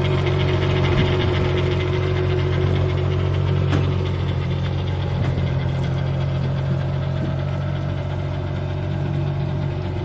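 Pontoon boat's outboard motor idling steadily, run out of the water on a garden hose for water testing.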